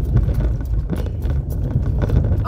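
Car tyres rumbling over a cobblestone street, heard inside the cabin: a deep, rough rumble with a fast run of small knocks and rattles.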